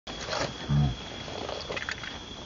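A macaque gives one short, low grunt about three-quarters of a second in. Faint rustling and a steady, thin high-pitched tone run underneath.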